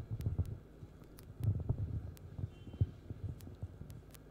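Faint low rumble of irregular soft thumps over a steady hum, with scattered sharp clicks.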